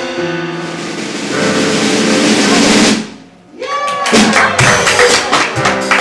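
Live church band playing: keyboard chords and a cymbal wash for the first three seconds, then a brief drop, then a steady drum-kit beat.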